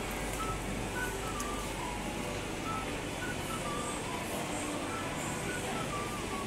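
Steady background noise of a busy indoor bus terminal concourse, with distant indistinct voices.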